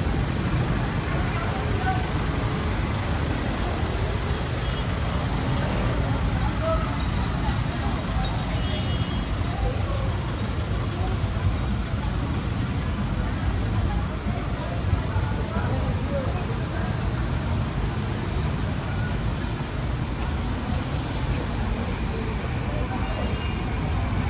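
Street ambience of slow, queued traffic: a steady low rumble of car engines, with scattered voices of people walking by.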